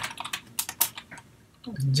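Keys clicking on a computer keyboard: a quick, irregular run of keystrokes as code is typed.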